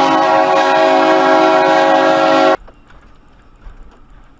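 Train air horn sounding one long, steady chord of several notes, loud and blaring, cut off abruptly about two and a half seconds in. After that only a faint low rumble remains.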